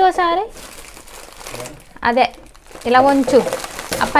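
Thin plastic carrier bag crinkling and rustling as it is grabbed and handled, with short bursts of speech in between.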